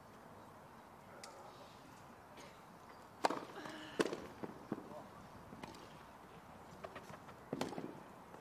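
Tennis ball struck by rackets in a rally on a grass court: single sharp hits spaced a second or so apart, the first two loudest, over faint crowd ambience.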